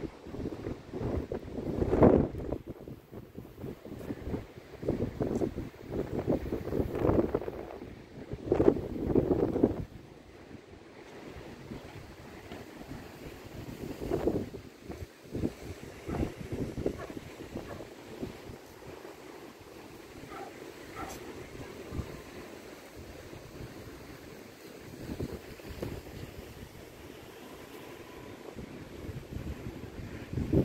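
Wind buffeting the microphone in strong, irregular gusts for the first ten seconds or so, then easing to lighter gusts, over a steady hush of small waves breaking on a sandy beach.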